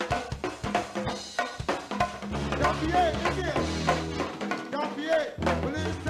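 Live go-go band recorded off a PA tape, playing a drum-kit and percussion groove over a bass line; the bass drops out briefly near the end.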